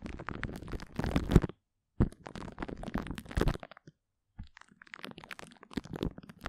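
Sticky crackling of glue stick on a microphone, heard close up. It comes in three bursts separated by short silences: about a second and a half of dense crackles, another run from about two seconds in, and sparser crackles from about four and a half seconds in.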